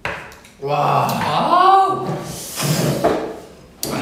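Young men's voices making drawn-out vocal sounds that slide up and down in pitch, with no clear words. A sudden sharp sound opens it and another comes just before the end.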